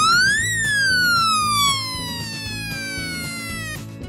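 A siren wailing once: its pitch rises to a peak about half a second in, then falls slowly and cuts off just before the end. Background music plays under it.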